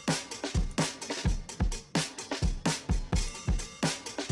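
Drum tracks of a cinematic pop song playing back in a mix: deep kick drum hits and sharp snare hits in a steady groove, run through a drum bus with a Neve 33609 compressor and a parallel compression bus.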